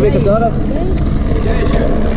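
People talking over a steady, low engine drone.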